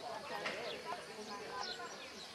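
A dressage horse's hoofbeats on a sand arena, with birds chirping and faint voices in the background.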